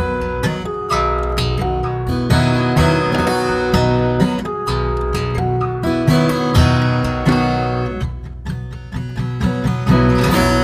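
Music led by acoustic guitar: a run of plucked and strummed notes over a low bass line, easing briefly near the end before picking up again.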